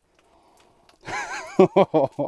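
Near silence for about the first second, then a man laughing: a wavering chuckle followed by a quick run of short 'ha' sounds.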